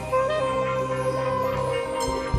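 Live concert music from a rock band with a choir and orchestra: a lead instrument holds one long note, bending in pitch just after it starts, over a steady backing.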